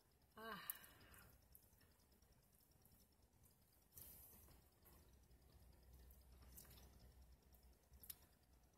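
Near silence, with a short sigh falling in pitch about half a second in, then a few faint mouth clicks from chewing a bite of burrito.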